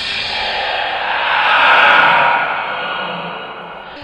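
Eerie, echoing whispering sound effect, a breathy hiss that swells to its loudest about halfway through and then fades away, standing for voices whispering from deep inside a cave.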